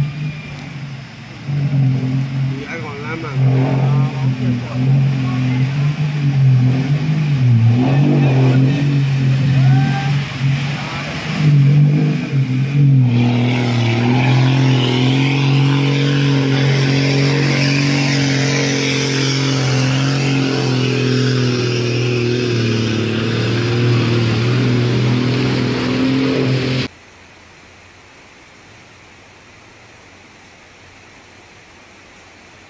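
Heavy truck engine running with a steady, slightly wavering drone as it drives through deep floodwater, with a hiss of rushing water over it. The sound cuts off abruptly near the end, leaving only a faint steady hiss.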